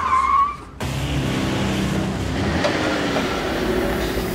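Car tires screeching as the car brakes hard, the screech cutting off sharply under a second in. A car engine then runs steadily.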